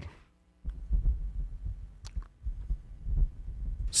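A low, uneven throbbing bass sound in the background, with one faint click about two seconds in.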